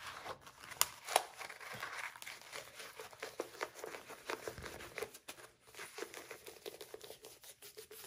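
Rolled diamond painting canvas and its plastic film crackling and crinkling as it is handled and unrolled, a dense run of small irregular crackles with a couple of louder clicks about a second in.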